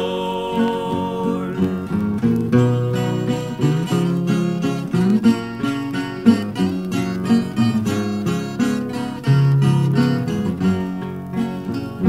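Instrumental break in a 1963 Brazilian música caipira toada: plucked acoustic guitars pick out a melody in quick separate notes over a bass line, with no singing.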